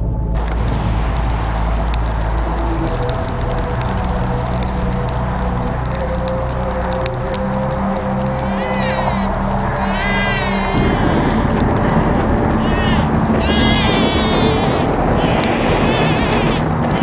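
Dense layered soundscape: low sustained tones that shift in steps, mixed with voices. From about halfway through, repeated wavering high calls join in, and the mix grows fuller near the end.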